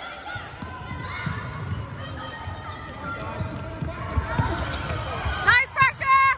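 Players' trainers thudding on a wooden sports-hall floor while voices carry in the echoing hall, then sharp high-pitched squeaks near the end.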